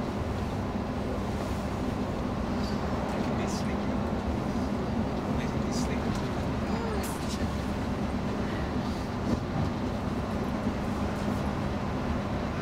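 Steady engine hum and road noise inside a bus cruising on a motorway, with a few brief clicks and rattles from the cabin.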